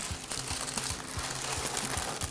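Parchment paper crinkling as it is lifted off a sheet pan and folded, in irregular rustles.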